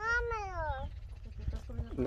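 A single high-pitched, voice-like call near the start, under a second long, rising slightly and then falling in pitch.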